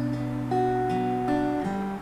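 Acoustic guitar playing a B minor chord, its notes picked one after another and left ringing.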